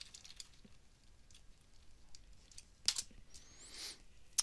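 Faint keystrokes on a computer keyboard, with one sharper, louder key click about three seconds in, as the amount is confirmed into a spreadsheet cell. A short rising hiss follows near the end.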